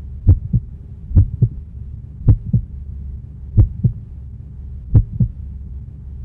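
A heartbeat sound effect: five double lub-dub thumps, low and deep, the beats coming slowly and spaced a little wider each time, over a steady low hum.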